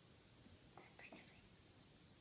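Near silence, with a faint, brief whispered child's voice about a second in.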